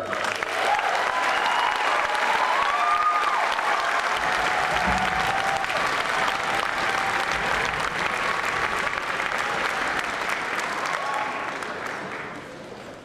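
Audience applauding at the end of an orchestral rock piece, with a few calls from the crowd in the first few seconds. The clapping dies away gradually near the end.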